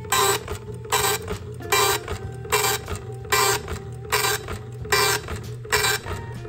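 SWTPC PR-40 seven-dot impact printer printing its character set line after line: a burst of print-head chatter about every 0.8 s, over a steady hum.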